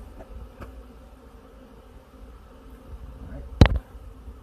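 Steady low buzzing hum, with one sharp click near the end.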